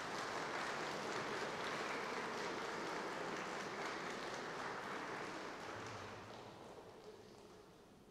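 Audience applauding, the clapping dying away about six seconds in.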